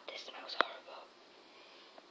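A brief whisper close to the microphone, with one sharp click about half a second in, then faint room tone.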